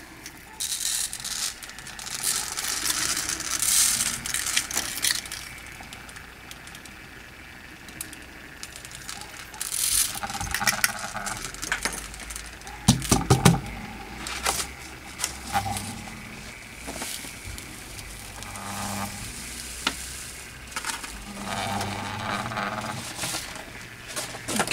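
Chunky glitter spooned from a small plastic cup and sprinkled onto an epoxy-coated tumbler, falling onto paper below in spells of soft noise. Sharp clicks of plastic spoons and cups being handled and set down come in between, most of them in the second half.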